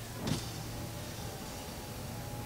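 The power sliding rear window of a 2013 Honda Ridgeline opening. A short click about a third of a second in is followed by the faint, steady whine of the window motor as the glass slides.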